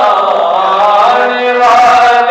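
A man chanting a Shia devotional recitation solo into a microphone, with no instruments. He holds long notes that slide in pitch, breaks briefly, and starts a new phrase near the end.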